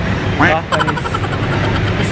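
Brief voices over a steady low rumble of outdoor background noise.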